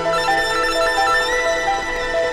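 Electronic library music: a synthesizer plays a quick, repeating pattern of short bright notes over held tones.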